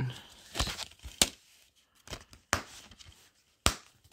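Hard plastic DVD case being handled and closed: several sharp plastic clicks and knocks, with light rustling between them.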